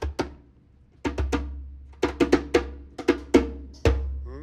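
Djembe played with bare hands: about a dozen sharp, ringing strokes. There are two at the start, a pause of nearly a second, then quicker groups of strokes in a loose rhythm.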